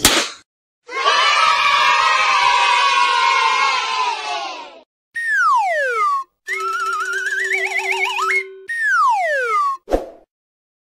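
Cartoon sound effects: a recorded crowd of children cheering for about four seconds, then a quick falling whistle, a wobbling rising whistle over a steady hum, and a second falling whistle.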